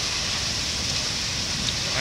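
Heavy rain pouring down in a storm, a steady hiss.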